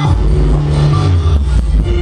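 Loud live band music playing a song intro, with long held low notes that shift pitch about every two seconds and a few short hits near the end.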